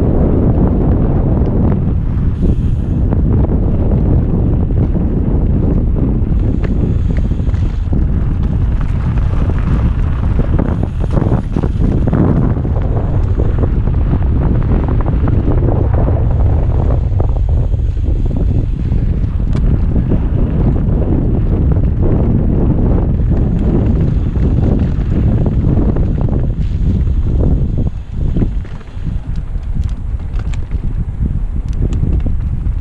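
Heavy wind buffeting a helmet-mounted action camera's microphone on a fast mountain bike descent, with mountain bike tyres and frame rattling over dirt and loose rocks in scattered knocks. The rumble drops off briefly near the end.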